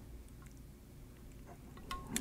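Quiet room with a low background hum and a few faint small clicks, the clearest one just before the end.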